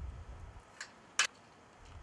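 Quiet, with a faint low rumble and two short clicks about a second in, the second one sharper and louder.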